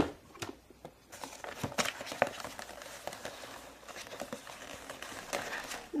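Plastic crinkling and rustling with many small crackles and clicks, as a plastic sheet or wrapping is handled and unfolded.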